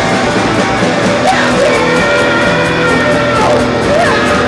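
Three-piece rock band playing live: electric guitars and drums, loud and continuous, with a few sliding guitar notes.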